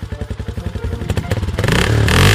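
Honda dirt bike engine running with a fast, even putter, growing louder and picking up in pitch near the end.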